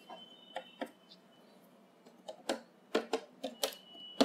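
Small clicks and taps of hands handling parts and cables on the sheet-metal back of an LED TV panel while the screen board is fitted: a couple of light taps early, then a quicker run of sharper clicks in the second half.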